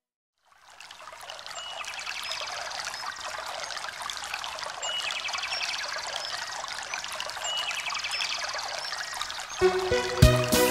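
After a brief silence, a recorded running-stream sound comes in about half a second in and grows, with repeated short high chirps over it. Music starts near the end.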